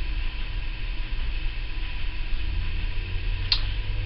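Steady low hum with faint hiss, and a single sharp click near the end.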